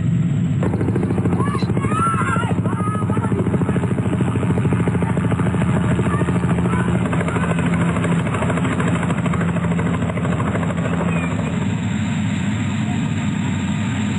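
Helicopter running steadily, its rotor giving a rapid, even chop over a low engine hum, starting about half a second in.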